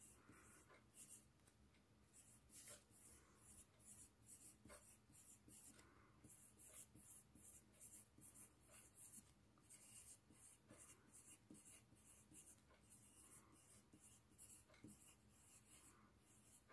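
Faint scratching of a graphite pencil on drawing paper in many short, irregular strokes.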